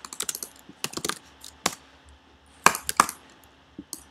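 Computer keyboard keys clicking: a quick run of keystrokes at the start, then scattered single key clicks, the loudest a little under three seconds in.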